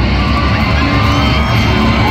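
Live rock band playing loudly through a stadium PA, the heavy bass and drums coming in right at the start.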